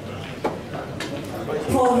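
Background murmur of voices in a large hall, broken by two sharp clicks about half a second apart. A man's announcing voice begins near the end.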